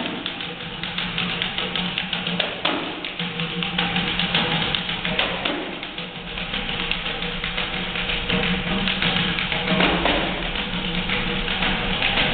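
Samba music with a fast, dense percussion rhythm, including the jingling taps of a pandeiro.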